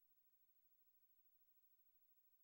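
Near silence: faint steady hiss of a blank recording.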